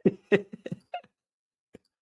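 A man laughing: a quick run of short bursts through the first second, then a faint click near the end.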